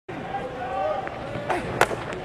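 Ballpark crowd chatter, then near the end a single sharp pop as a 92 mph pitch smacks into the catcher's mitt on a swinging third strike.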